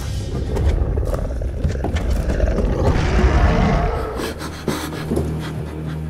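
Horror-film score and sound design: a dense low rumble swells into a roar-like surge about three seconds in, then gives way to a low sustained drone, with scattered sharp knocks.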